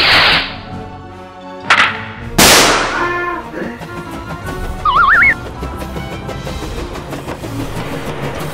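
Cartoon firework sound effects: a rocket whooshing off, a sharp bang, then a louder bang about two and a half seconds in with a long fading hiss, followed by a short warbling whistle. Music plays underneath.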